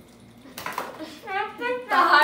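Plastic snack boxes clattering and popcorn being rattled and handled, starting about half a second in. In the second half a person's voice comes in, short quick syllables repeated several times a second.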